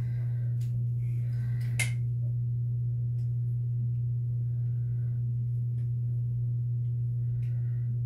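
A steady low hum with no change in level, with a few faint clicks and light handling noises on top.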